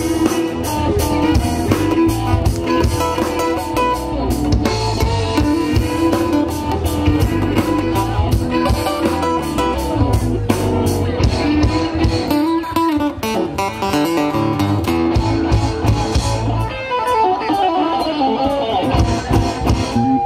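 A live red dirt/southern rock band playing an instrumental break with no vocals: electric guitars, acoustic guitar, bass, fiddle and a drum kit keeping a steady beat.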